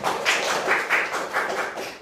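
Audience applauding: a dense patter of hand claps that starts abruptly and carries on unevenly.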